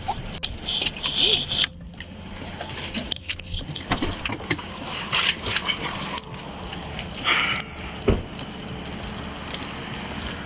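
Rustling, scraping and knocking from a police body-worn camera as its wearer moves and gets out of a patrol car, in irregular bursts, with one sharp thump about eight seconds in.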